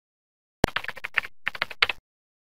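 Computer keyboard typing, a quick run of about a dozen keystrokes in two bursts with a brief pause between them, stopping abruptly. It serves as the typing sound effect for the intro title text.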